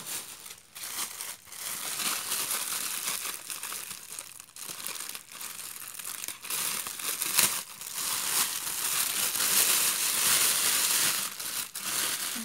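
Thin clear plastic bag crinkling and rustling as hands untwist its knotted neck and pull it open, louder in the last few seconds, with one sharp click about seven seconds in.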